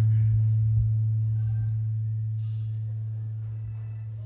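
A single low note held through the sound system, a steady hum-like tone that fades slowly and evenly away. Faint laughter and voices come through behind it.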